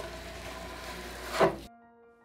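Metal putty knife scraping gel-stripper-softened paint off a wooden vanity top, over a steady electrical hum. A louder scrape swells about one and a half seconds in and cuts off sharply.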